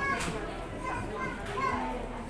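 Indistinct background chatter of several overlapping voices, some of them high like children's, with no single voice clear.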